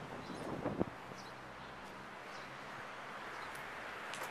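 Quiet outdoor city ambience: a steady low background hum and hiss, with a brief knock just under a second in.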